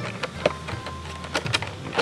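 Cardboard figure box being handled and opened by hand, with a few short clicks and taps of the card.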